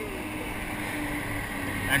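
A motor running with a steady low hum over a haze of background noise.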